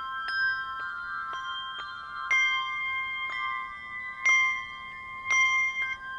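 Brass handbells played as a piece by two ringers: struck notes about twice a second, each ringing on and overlapping the next, with some strikes louder than others.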